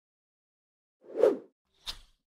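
Sound effects of an animated logo intro: a short soft blip about a second in, the loudest sound, then a brief brighter click near the end.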